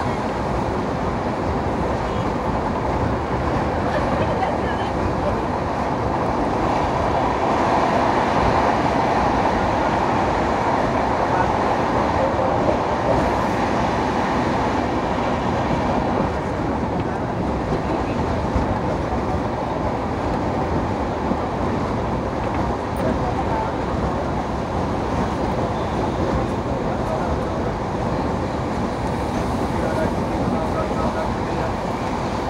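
LHB passenger coach running at speed, heard from an open window: a steady rush of wind mixed with the rumble of wheels on rail, a little louder about a third of the way in.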